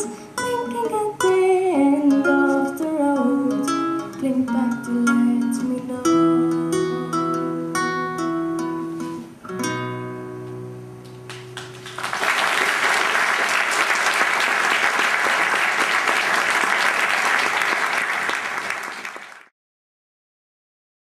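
Nylon-string classical guitar fingerpicked through the last phrases of a song, ending on a held final chord. About twelve seconds in, audience applause starts and runs on until the sound cuts off abruptly just before the end.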